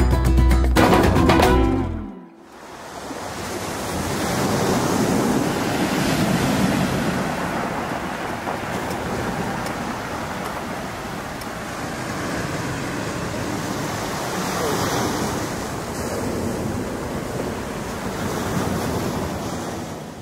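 A flamenco guitar band track ends about two seconds in, then sea waves wash onto a pebbly shore, swelling and easing in a steady rush.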